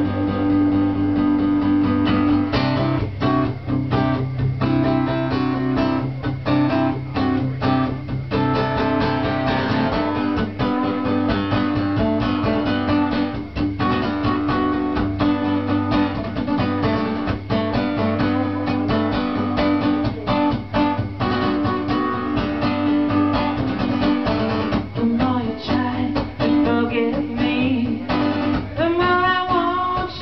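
Steel-string acoustic guitar played live, strummed in a steady rhythm through an instrumental passage. A man's singing voice comes in near the end.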